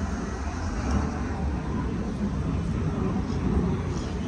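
A car engine running with a low, steady rumble.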